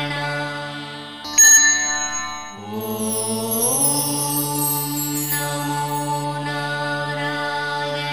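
Devotional intro music: a long held chanted mantra over a sustained drone. A bright chime rings out about a second and a half in, then the held tones slide upward in pitch and continue steadily with a shimmering sweep above.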